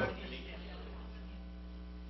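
Steady low electrical mains hum from the sound system's electronics, faint and unchanging.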